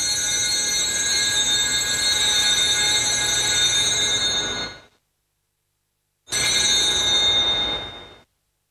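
Cluster of small brass altar (sanctus) bells shaken in a continuous ring at the elevation of the host during the consecration. The peal stops sharply about five seconds in, and a second, shorter ring follows about a second and a half later.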